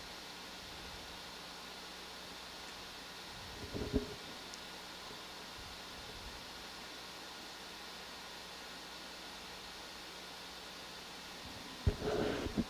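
Steady low hiss with a faint constant hum underneath, the background noise of the control-room audio feed. A single brief, short sound breaks through just before four seconds in.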